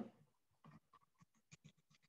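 Faint computer keyboard typing: a quick, irregular run of soft keystroke clicks starting about half a second in.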